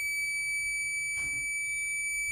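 Digital multimeter's continuity buzzer sounding one steady, high-pitched beep: the probes are across the relay's common and normally closed pins, which read about 2 ohms, so the contact is closed.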